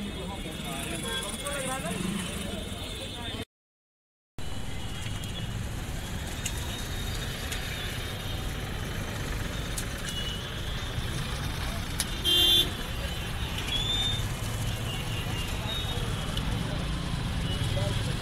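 Road traffic noise, with one short honk of a vehicle horn about two-thirds of the way through. The sound cuts out completely for about a second near the start.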